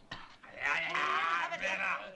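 A person's long, drawn-out vocal cry, starting about half a second in and wavering in pitch for about a second and a half.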